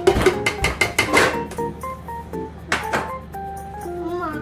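A round metal flour sieve tapped and shaken against a stainless steel mixing bowl while sifting flour, giving quick clattering metal taps: a dense run in the first second and a half and another short burst near three seconds. Background music plays throughout.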